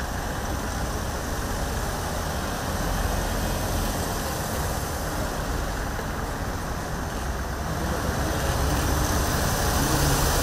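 Engines of a line of white Mahindra Bolero SUVs driving slowly past one after another, a steady low rumble that grows a little louder near the end.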